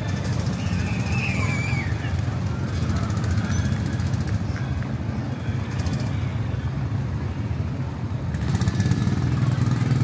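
Outdoor amusement-park ambience: a steady low rumble with faint distant voices.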